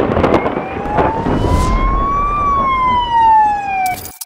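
A loud siren-like wailing tone that rises slowly and then falls, over a noisy wash that starts with a sudden crash, cutting off abruptly at the end.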